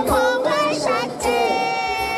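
A young man singing a Thai pop song into a handheld microphone over backing music, moving through short phrases and then holding one long note in the second half.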